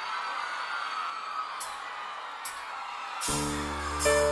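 A live band starting a song. Two sharp cymbal strikes count in, a little under a second apart, then the band comes in about three seconds in with held keyboard chords and bass.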